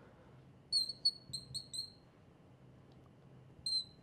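A marker squeaking on a glass lightboard as writing goes on. There is a quick run of about five short squeaks about a second in, then one more near the end.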